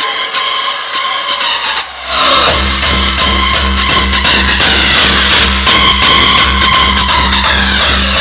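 Hardstyle dance track over a loud club sound system. For the first two seconds the bass is filtered out. About two seconds in, a heavy distorted kick drum drops in and pounds steadily.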